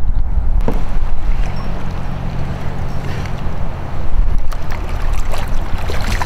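Wind rumbling on the microphone over open water, with a few sharp splashes near the end as a hooked smallmouth bass thrashes at the surface beside a kayak.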